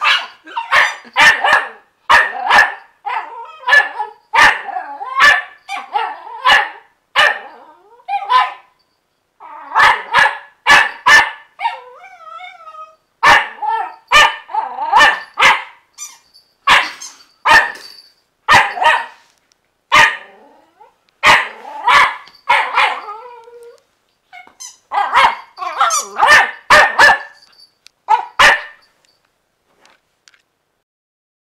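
Jack Russell terrier puppy barking in play: dozens of short, high barks in quick runs, broken by a few brief pauses.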